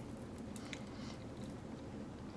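Faint, soft chewing of a mouthful of red beans and rice with the lips closed, with a few small moist mouth clicks.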